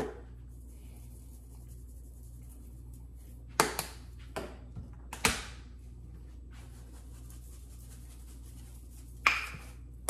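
Seasoning shakers handled and shaken over pork chops in a stainless steel sink: a few short rattles and knocks a little past a third of the way in and around halfway, and one more near the end, over a steady low hum.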